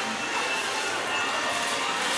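Steady background noise of a busy shop floor, with faint distant voices.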